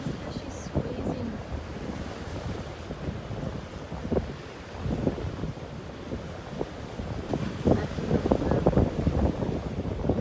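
Surf washing on the beach with wind buffeting the microphone. The gusts grow louder in the last few seconds.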